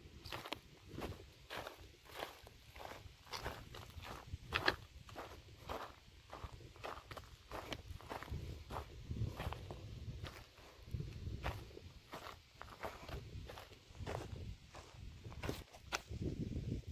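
Footsteps of a person walking on a dry earth bank strewn with dry grass and crop stalks, about two steps a second, each step a short crunch.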